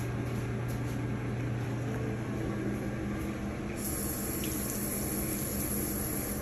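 Water running from a sink tap as a toothbrush is wetted under it, over a steady low hum.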